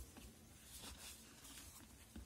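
Near silence, with only the faint soft rubbing of a cotton pad wiping an orchid leaf.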